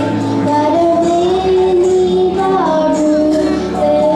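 A boy singing a solo through a handheld microphone over accompanying music, holding long notes and sliding between pitches, with light percussion ticking along.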